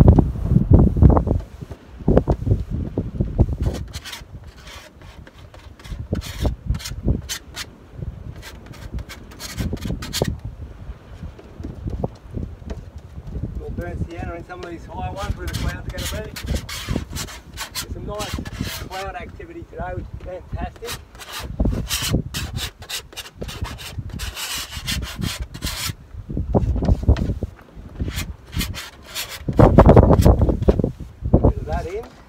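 Palette knife scraping and spreading thick oil paint across a large linen canvas in many short, repeated strokes, with gusts of wind buffeting the microphone.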